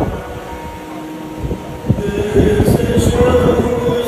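Church congregation in a large hall: a quieter stretch of crowd sound, then about two seconds in the music picks up again with a long held note over a low rumble.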